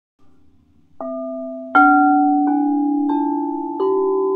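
Leize quartz crystal singing bowls struck one after another with a striker: five strikes starting about a second in, each a higher note than the last, each tone ringing on and overlapping with the others.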